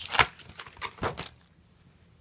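Toy packaging rustling as it is handled, in two short bursts about a second apart.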